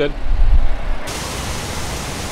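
Low rumble of a running Ford pickup as it pulls a trailer slowly forward, with wind buffeting the microphone. After about a second it changes abruptly to a steady, quieter hiss.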